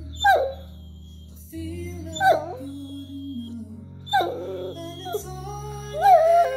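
Basset hound whining: three short whines that start high and fall in pitch, about two seconds apart, with another starting at the very end, over background music.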